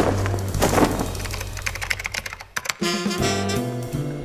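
A rapid run of computer-keyboard typing clicks lasting about two and a half seconds, as a sound effect. It sits between two stretches of music: the music fades just after the start and comes back about three seconds in.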